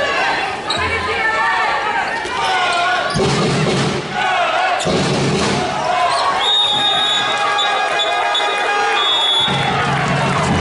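Handball match sound in an arena hall: the ball bouncing on the court floor under voices and music from the crowd and the public-address system, with a held, steady chord-like tone from about six and a half seconds to nine and a half.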